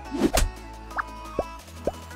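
Animated logo intro sting: a loud hit about a quarter second in, then three short rising blips, over a steady background music bed.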